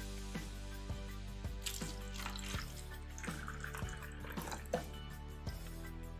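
Water being poured from a bottle into a small plastic cup holding a tea bag, under background music.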